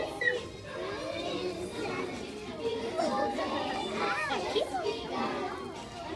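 A group of young children's voices chattering and calling out over one another, with music faint underneath.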